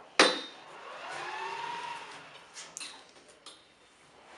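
A sharp metal clack, then a drawn squeak that rises and levels off and a few small clicks as the metal pipe-inspection crawler is handled and turned on a tabletop.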